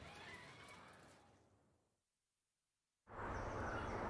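Faint background noise fades out into dead silence. About three seconds in, a steady, even background noise of outdoor ambience starts.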